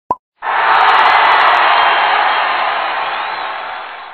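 Intro sound effect: a short pop, then a loud rush of noise that sets in about half a second later and slowly fades away over the next three and a half seconds.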